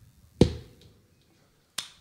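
Two sharp clicks about a second and a half apart; the first is followed by a short ringing tone that fades away.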